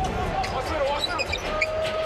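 Basketball being dribbled on an arena's hardwood court over continuous crowd noise, with a steady high tone held for about half a second near the end.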